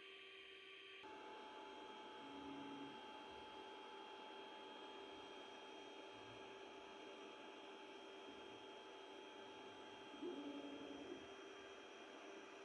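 Very faint steady hum and whine of a Creality CR-10S Pro 3D printer starting a print, beginning about a second in, with two short low tones, one about two seconds in and one near the end.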